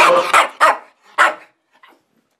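A small dog barking: several short, sharp barks in quick succession in the first second and a half, then it stops.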